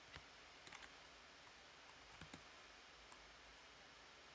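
A few faint, scattered computer keyboard clicks in near silence while code is being typed.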